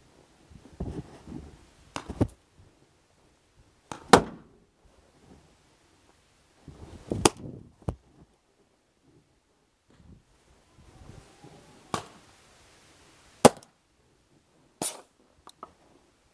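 Paintball pistol shots: a handful of sharp single pops at irregular intervals, the loudest about four seconds in, with faint rustling of movement between them.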